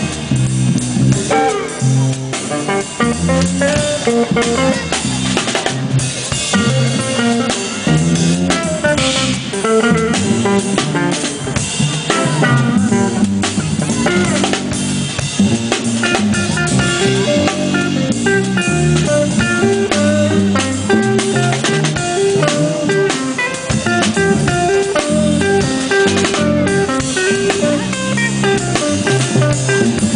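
Jazz-funk trio of guitar, bass and drum kit playing an instrumental tune live, with the guitar carrying a busy melodic line over a steady drum groove.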